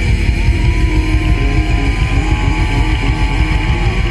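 Loud rock music with guitar, running continuously with a dense, pulsing low end.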